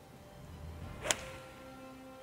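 A six-iron golf swing: a brief swish rising into a single sharp click as the clubface strikes the ball about a second in, over soft background music.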